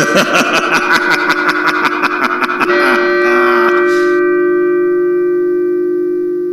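Prop soundtrack playing back: music with a quick, even run of sharp clicks, then about three seconds in a single bell strike that rings on as a long, slowly fading ding.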